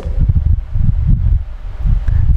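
Low, uneven rumble of air buffeting the microphone, rising and falling in gusts.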